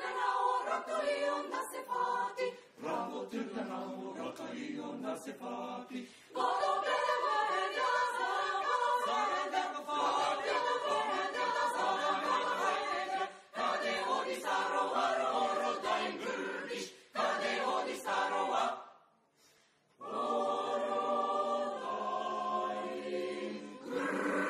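Mixed choir of men's and women's voices singing a cappella, with one pause of about a second near the end before the voices come back in.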